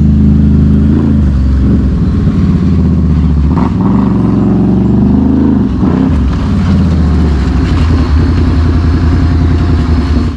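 Can-Am Renegade ATVs' V-twin engines running close by, mostly at idle, the engine note dipping and rising a few times as a second ATV rides up and pulls alongside.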